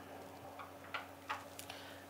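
A few faint light clicks, about three a second, of small glass medicine bottles being handled on a desk, over a faint steady hum.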